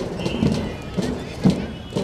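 Marching band drums playing a steady march beat, about two beats a second.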